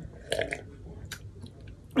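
A person drinking from a plastic cup: a short gulp about a third of a second in, then a few faint mouth clicks.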